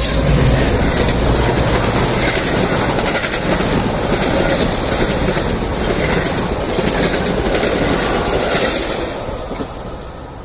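Metra commuter train passing close by, cars rolling with wheels clicking over the rail joints. A low rumble at the start gives way to steady wheel noise that falls away in the last second.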